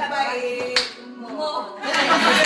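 A few hand claps among a group's voices, one voice holding a sung note.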